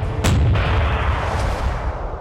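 Heavy gunfire, like naval artillery: a sharp report about a quarter second in, a second, weaker shot just after, and a long deep rumble that begins to fade near the end.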